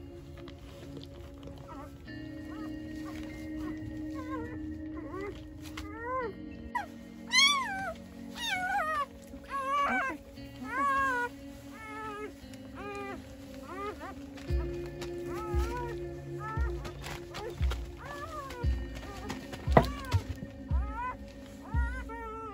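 A newborn Great Pyrenees puppy crying over and over in short, high squeals that rise and fall in pitch. Background music plays underneath, with a steady beat coming in about two-thirds of the way through.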